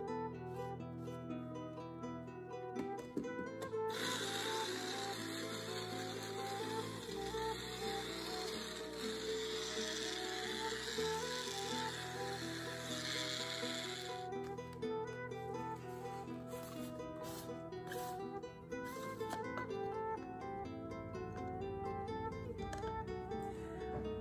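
Small electric blade grinder running for about ten seconds, from about four seconds in, as it grinds dried plantain leaves to a fine powder, then stopping. Background music plays throughout.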